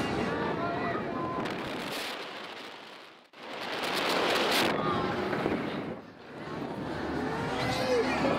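Wind rushing over the microphone as a Booster MAXXX thrill ride's gondola swings round on its arm, swelling and fading with a sharp drop about three seconds in and a shorter dip about six seconds in. Voices call out near the end.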